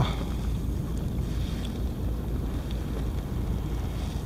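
Steady low wind rumble on the microphone over a kayak on light chop, with a couple of faint small ticks of water against the hull.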